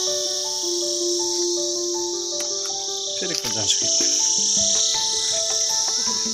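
Steady, high-pitched drone of insects, with background music of held, stepped melody notes playing over it.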